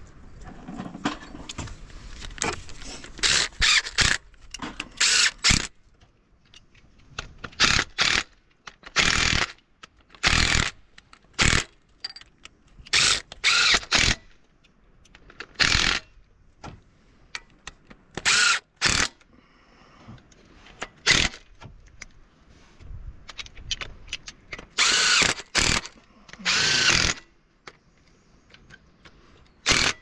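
Cordless power driver with a socket running in well over a dozen short bursts, each under a second, spinning bolts at the water pump on a Ford Transit engine.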